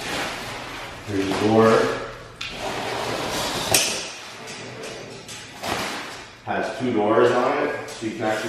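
Foam packing sheets rustling and a metal dog-crate panel frame rattling as it is lifted out of its box, with a sharp metallic click a little under four seconds in.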